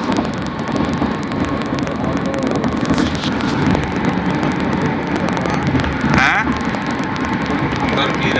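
Steady road and engine noise of a car travelling along a highway, heard from inside the cabin.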